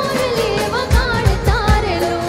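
Live garba music: a wordless singing line that glides and wavers, over a driving drum beat.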